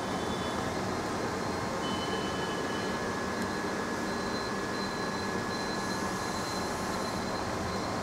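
Steady mechanical room noise, an even whir with faint high-pitched whines. One whine switches on and off repeatedly in the second half.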